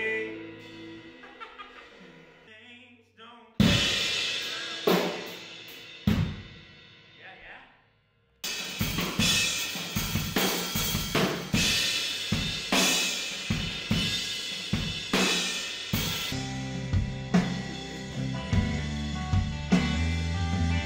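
Rock band playing in a studio: ringing guitar notes fade, then a few loud drum-and-cymbal hits, and after a short break the drum kit keeps a steady beat with snare, hi-hat and cymbals. Bass and guitar come in strongly near the end.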